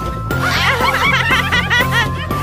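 A person laughing in quick, rapid bursts that start about half a second in, over background music.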